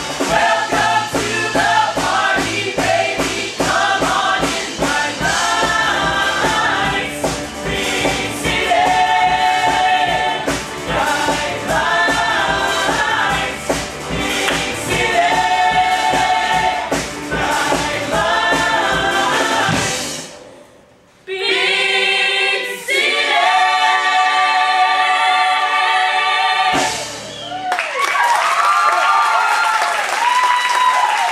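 A musical-theatre ensemble sings with a live band over a steady beat. About 20 seconds in, the band drops out and the voices hold a final chord for about five seconds, which cuts off sharply. Applause breaks out near the end.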